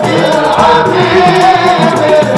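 Men's group singing a Swahili Maulid qasida in unison in Rast maqam, the melody held in long chanted lines, with hand-beaten frame drums keeping a steady rhythm underneath.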